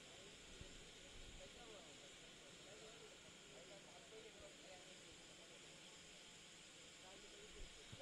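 Near silence: a faint steady hiss with faint, distant voices.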